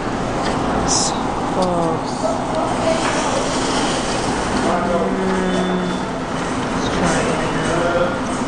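Loud, steady background hubbub with people's voices, and a short sharp click about a second in.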